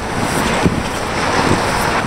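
Wind blowing across the camera's microphone, a steady rushing noise.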